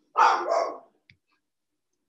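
A woman's short, breathy laugh in two quick bursts.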